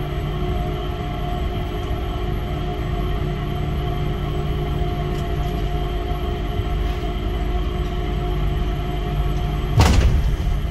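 Cabin of the Changi Airport Skytrain, a rubber-tyred automated people mover, running along its guideway: a steady hum made of several constant tones over a low rumble. A single sharp knock sounds near the end.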